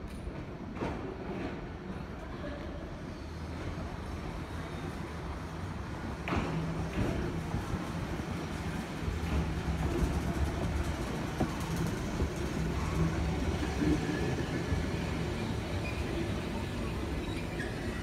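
A Randen (Keifuku Electric Railroad) single-car electric tram pulls slowly into the platform. Its motor and wheel rumble grows steadily louder as it comes alongside, with a couple of sharp clicks from the wheels on the track.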